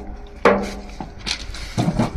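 Hammer blows on a chisel held against the steel cladding of a locomotive boiler, working the cladding free. Three strikes, the first about half a second in the loudest, each with a short metallic ring.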